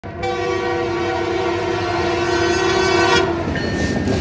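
Canadian Pacific diesel locomotive's air horn sounding one long chorded blast that cuts off about three and a half seconds in, over the rumble of the passing freight train.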